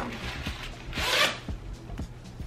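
A puffer jacket's front zipper being pulled open: one quick zip about a second in, with a few faint clicks around it.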